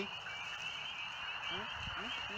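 A chorus of spring peepers: many small frogs calling at once, making a steady high-pitched chorus. A faint low voice is heard near the end.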